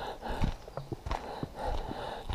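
Hiking footsteps on a dirt mountain trail: a loose series of soft knocks and scuffs, a few each second.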